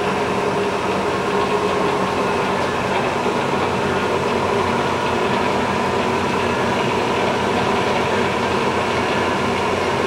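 Bridgeport Series II vertical mill's head running with its spindle turning, driven by the 4 HP main motor: a steady mechanical hum with a constant whine over it.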